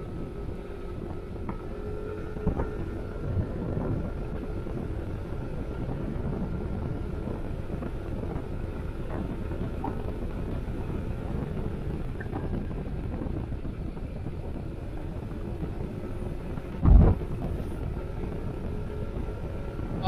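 Steady motorcycle riding noise on the open road: wind rushing over the microphone above the running engine, with a faint steady whine. A short loud thump about three seconds before the end.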